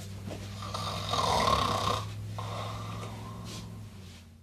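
A man snoring: a loud snore about a second in, then a softer, longer one after it, over a steady low hum.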